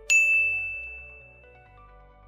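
A single bell-like 'ding' sound effect: one bright strike that rings on one high tone and fades away over about a second and a half.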